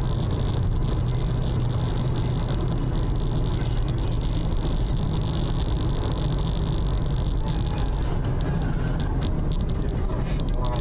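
Steady road and engine noise of a moving car heard from inside the cabin, as a dashcam's microphone picks it up, with a thin steady high tone over the low rumble.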